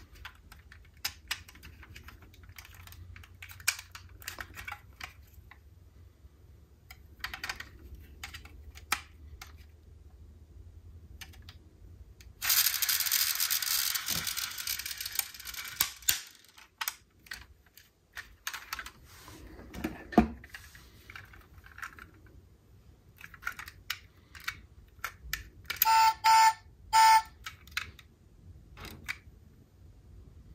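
Light clicks and taps of a diecast metal toy police SUV being handled, its small doors and parts snapping open and shut. Midway a loud rushing noise runs for about three and a half seconds, and near the end three short pitched beeps sound.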